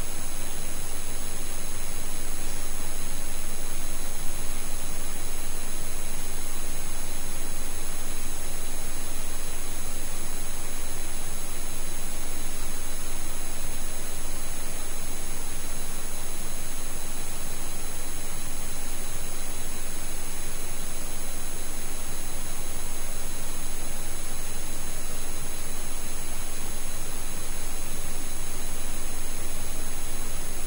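Steady hiss of static-like background noise, with a few thin, constant high-pitched whines running through it and no other event.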